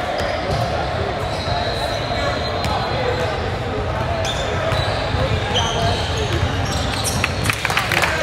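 Basketball game in a gym: a ball bouncing on the hardwood floor and short sneaker squeaks, over a steady din of indistinct voices echoing in the large hall. Sharper knocks and squeaks pick up near the end as play resumes.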